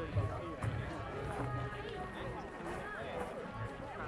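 Indistinct voices of players and spectators talking and calling out at a distance over outdoor background noise, with uneven low thumps.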